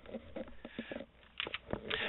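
Quiet room with faint, scattered small clicks and rustles, a lull between bits of talk.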